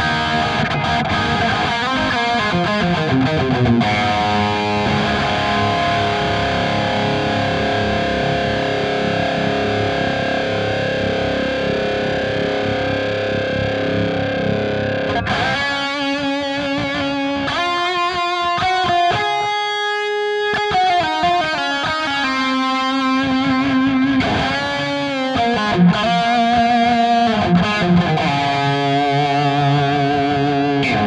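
High-gain distorted electric guitar through a Line 6 Helix, with two compressors in the chain. Sustained chords ring out for about the first fifteen seconds, then single-note lead lines follow, with bends and vibrato. The loudness stays very even and the notes sustain long under heavy compression.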